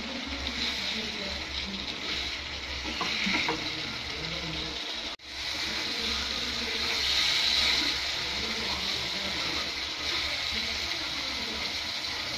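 Onion-tomato masala with halved boiled eggs sizzling in a frying pan as a spatula stirs it: an even frying hiss. The sound cuts out briefly about five seconds in.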